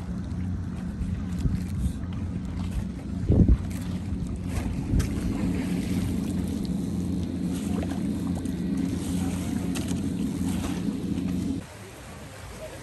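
Wind and water rushing past a small outrigger sailboat under way, with a steady low hum running underneath. A loud knock comes about three and a half seconds in, and near the end the sound drops suddenly to a quieter wash.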